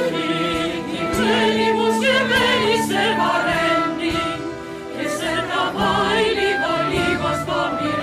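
Live Greek laïko band music between sung verses: a melody line of held, wavering notes and quick runs over a steady band accompaniment.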